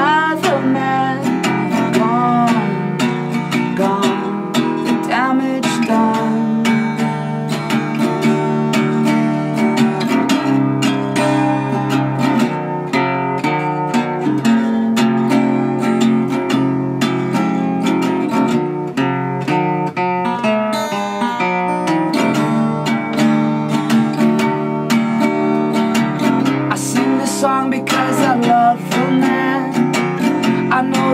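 Gibson acoustic guitar played in an instrumental passage, a steady run of picked and strummed chords with ringing notes.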